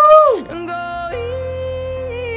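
A woman's singing voice over music: a loud sung note that swells up and falls away in the first half second, then a long held note with a slight wavering from about a second in.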